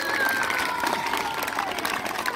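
A crowd of children and adults clapping for a player called up to receive an award, with children's voices calling out over the applause.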